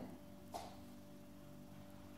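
Quiet room tone with a faint steady hum, and one short faint click about half a second in.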